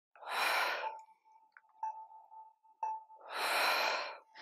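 A woman's two heavy, audible breaths about three seconds apart, taken in time with squats: breathing hard from the exertion of a fast, heart-rate-raising exercise sequence.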